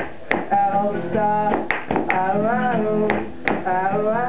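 Live acoustic guitar strummed in sharp strokes about every second and a half under a voice singing long held notes without clear words, one of them wavering near the middle.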